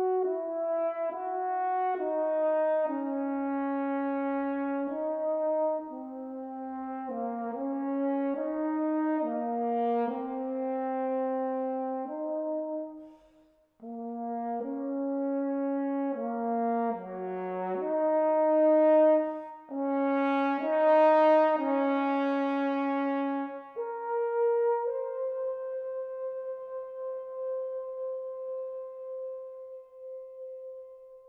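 Unaccompanied French horn playing a quick-moving melody, one note at a time, with a short breath break about halfway through, ending on a long held note that fades away.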